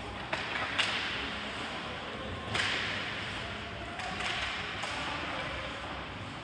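Ice hockey play in an arena: two sharp clicks of sticks on the puck in the first second, and skate blades hissing as they scrape across the ice, loudest about two and a half seconds in and again a little after four seconds.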